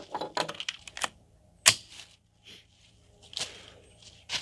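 Metal clicks and clacks of a .22 rifle being reloaded: a quick run of small clicks in the first second, then single sharper clacks about a second and a half apart.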